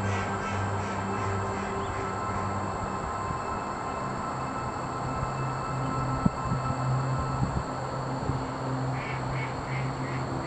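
Ducks quacking in runs of quick repeated quacks that fade off, one during the first two seconds and another near the end, over soft sustained background music. A single sharp click a little past the middle.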